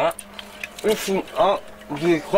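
A man's voice: three short vocal sounds with pauses between them, not clear words.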